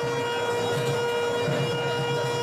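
A reed wind instrument holds one long, steady note, rich in overtones, part of the wedding's ritual music.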